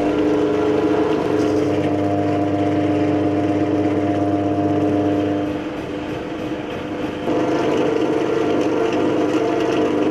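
Drill press motor running steadily, spinning a mixing paddle in a bucket of liquid; the sound drops for about two seconds a little past halfway, then comes back.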